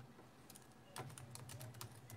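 Faint typing on a keyboard: a quick, uneven run of key clicks, starting about half a second in and coming thickest from about a second in, over a low steady hum.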